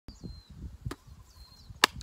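Handling noise from a phone camera being set in place: low rumbling bumps and rubbing on the microphone, a small click about a second in, then a single loud sharp snap just before the end.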